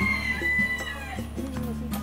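A rooster crowing: one long, slightly falling call that ends a little over a second in, over steady background music.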